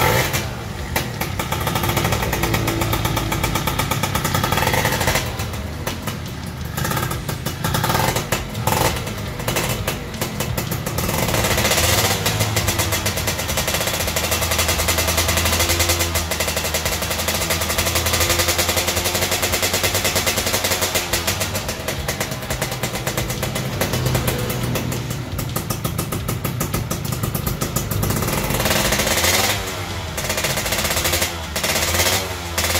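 Yamaha F1ZR two-stroke engine, bored to 116 cc, running on a stand with a rapid stream of exhaust pulses, its revs rising and falling as the throttle is worked. This is a test run while the carburettor is being set up.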